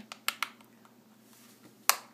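Plastic back cover of a Samsung Galaxy S3 being pried off by fingernail: a few faint clicks, then one sharp snap near the end as the clips let go.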